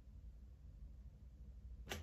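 Very quiet room tone with a faint, steady low hum.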